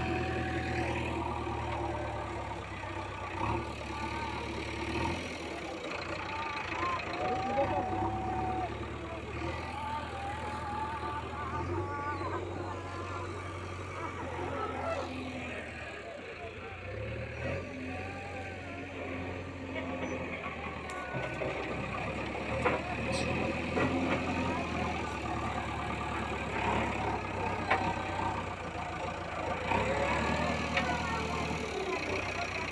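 JCB backhoe loader's diesel engine running as the machine pushes soil with its front bucket, the engine note stepping up and down several times as it works.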